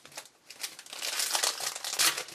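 Foil wrapper of a Panini Certified hockey card pack crinkling as it is picked up and worked open by hand: a dense crackle that starts about half a second in and grows louder.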